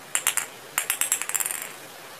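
Pink toy ball jingling and rattling as it is rolled across a concrete floor, in two quick bursts of light metallic clinks.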